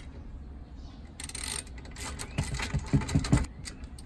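Fulterer FR5400 heavy-duty steel locking drawer slide being handled and slid, giving a burst of metallic rattling and clicking from about a second in, with several sharp clicks near the middle.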